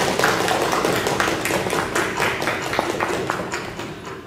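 Audience applauding, dense clapping that thins and fades toward the end.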